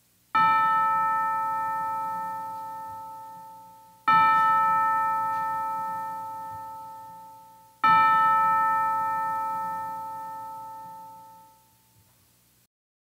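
A bell struck three times, about four seconds apart, at the same pitch each time, each ring fading slowly away.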